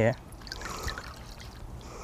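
Sanitizing solution trickling and dripping from a cloth into a small bowl, quiet and soft.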